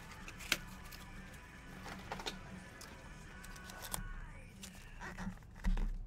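Faint background music with a few short clicks and taps from cardboard card boxes and packs being handled on a tabletop, and a dull thump near the end as something is set down.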